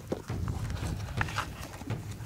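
A few short, irregular scrapes and knocks against rock as a climber without hands or feet hauls himself onto the rock face with his arms and prosthetic legs in rock shoes.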